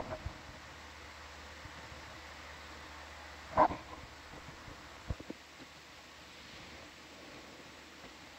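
A pause in the talk: a low, steady hiss, broken by one short sound about three and a half seconds in and a few faint clicks around five seconds.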